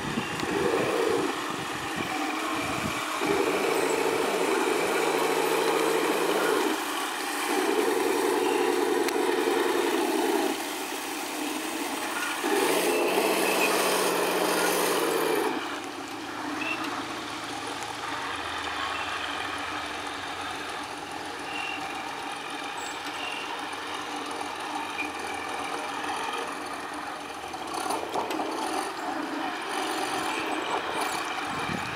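Radio-controlled model Nashorn tank driving, with its motors and engine sound running. There are three louder stretches of steady-pitched running in the first half, then a quieter, lower drone.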